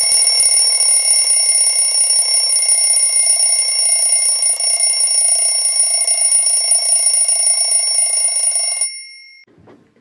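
A loud alarm bell ringing steadily for about nine seconds, then cutting off, with a brief ring-out. It signals that time is up.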